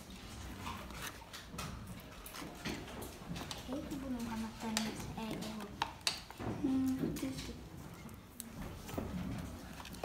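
Children's voices in a room, mixed with frequent light clicks and taps of plastic bottles being handled on a wooden table.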